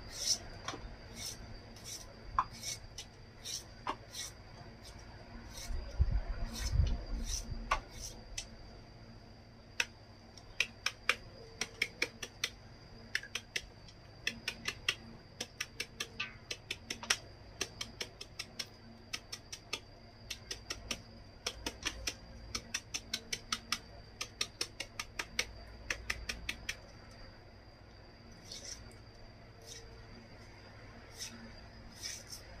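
A knife cutting a fresh bamboo shoot into thin strips by hand, giving sharp cutting clicks in quick runs of about four or five a second. A faint steady high tone sits underneath, and a short low rumble comes about six seconds in.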